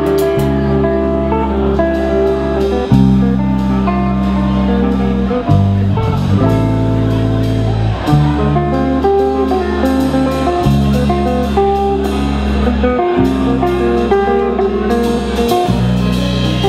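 Live instrumental guitar rock from a trio: an electric guitar plays a melodic line over held bass notes that change every two to three seconds, with a drum kit and cymbals keeping time.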